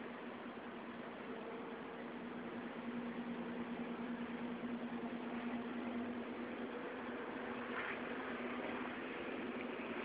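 Steady hiss with a low, steady machine hum that grows stronger a couple of seconds in and eases after about six seconds.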